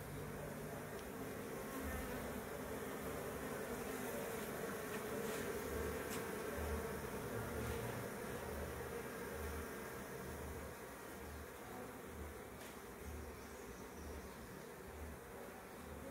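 Faint, steady buzzing of a swarm of Africanized honeybees as they settle into and crawl over a new hive box.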